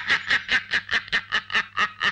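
A man laughing loudly in a long, rapid run of short, evenly spaced bursts, about five a second.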